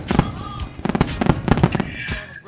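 Fireworks sound effect: a quick, irregular run of sharp pops and bangs, with background music under it.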